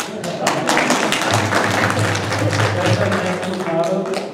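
An audience applauding: many hands clapping irregularly. A low hum runs for a couple of seconds in the middle.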